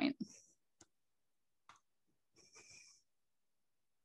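The last syllable of a spoken question, then a pause holding a few faint, isolated clicks and one brief soft sound, ending in dead silence.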